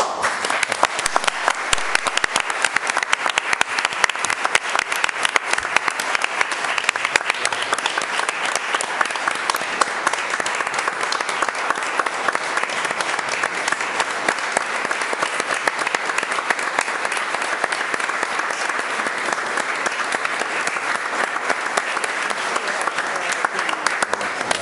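Sustained applause from a room full of people standing and clapping at once, starting suddenly and holding steady.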